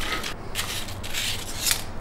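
Crinkling and crackling of foil blister packs as tablets are pressed out by hand, in a few short bursts.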